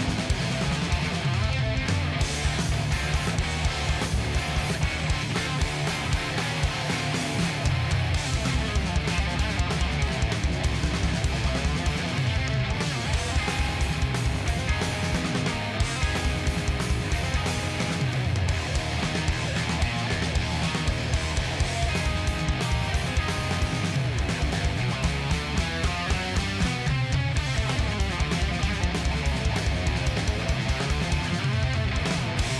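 Live rock band playing a fast stoner-rock song: gold-top Les Paul electric guitar, electric bass and a drum kit keeping a steady driving beat.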